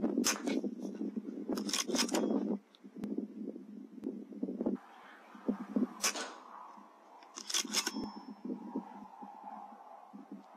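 Weihrauch HW100 .22 pre-charged air rifle shots: sharp cracks a little after the start, a quick cluster around two seconds, one about six seconds in and a pair near eight seconds, some with a brief metallic ring. A low rushing noise fills the first couple of seconds, and a faint thin tone falls slowly in pitch through the second half.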